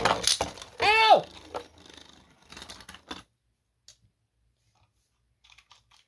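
Plastic Beyblade top spinning and rattling in a plastic stadium, then light plastic clicks and rattles as it is handled and lifted out, with a brief rising-and-falling squeak about a second in. After about three seconds only a few faint clicks.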